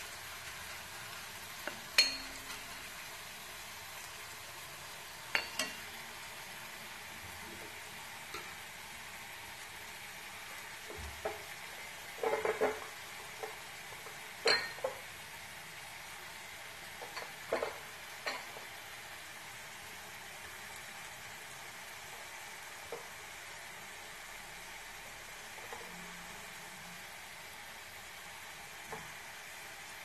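Garlic slices and curry leaves frying in a shallow layer of oil in a black kadai, a soft steady sizzle. A steel spoon stirs them, scraping and clinking against the pan now and then, mostly in the first twenty seconds.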